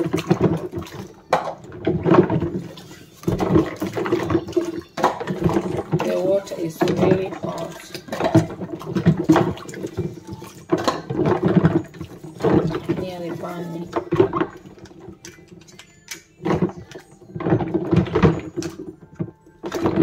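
Water sloshing and splashing in a plastic basin as small baby-bottle parts and bottles are scrubbed by hand with a bottle brush, with repeated short knocks and rubs. A person's voice is heard at times over it.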